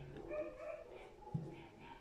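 Faint thin whine in the first second, then a single light click about a second and a half in as the bassoon reed tip cutter is handled.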